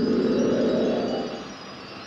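Ringing, chime-like time-travel transition sound effect that holds for about a second, then fades away.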